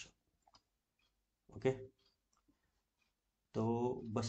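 A few faint, scattered clicks of a stylus on a pen tablet as a number is handwritten on a digital whiteboard, between a man's short words of speech.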